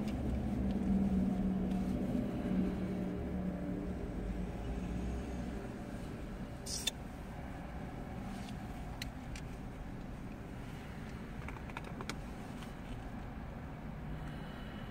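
Low hum inside a parked car's cabin, fading over the first several seconds. A single click comes about seven seconds in, and a few faint ticks follow near the end.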